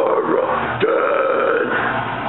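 Harsh screamed metalcore vocal into a handheld microphone: two long screamed syllables, the second breaking in sharply just under a second in.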